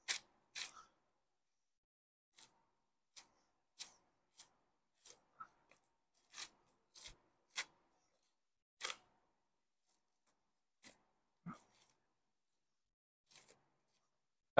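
Near silence broken by about a dozen faint, short snicks and scrapes at irregular intervals: a boning knife cutting a flap of meat and fat away from a hanging beef short loin.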